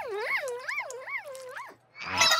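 A high cartoon voice humming a closed-mouth 'mmm' of delight through a full mouth, its pitch swooping up and down about two and a half times a second. It stops shortly before the end.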